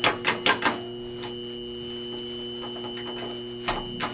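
Steady electrical buzz in a hydraulic elevator cab, a low hum with a thin high tone above it. A quick run of sharp clicks comes in the first second and one more click near the end.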